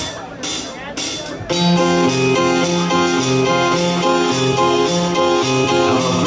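Live band starting a song. A few sharp ticks come about half a second apart, then about a second and a half in the electric guitar, keyboard, bass and drums come in with a steady, rhythmic intro.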